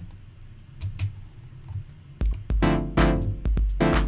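A few clicks, then about two seconds in a synthesizer loop starts playing back: bassy chords chopped into a stuttering rhythm by the MIDI sequencer.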